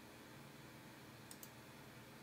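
Near silence with room tone, and one faint computer mouse click, a quick double tick, about a second and a half in.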